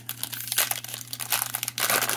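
A MetaZoo trading-card booster pack's foil wrapper being torn open and crinkled as the cards are pulled out: a fast, continuous run of crackles and rips.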